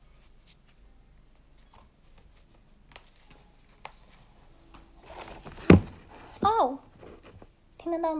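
Faint handling of a tablet in a folding cover: scattered soft rustles and light taps, then a short rustle ending in one sharp knock about two-thirds of the way in. A brief vocal sound follows, and speech starts right at the end.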